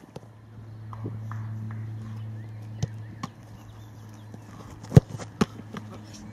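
Football being struck and caught during goalkeeper shot-stopping practice: a few scattered sharp thuds, the loudest about five seconds in, over a steady low hum.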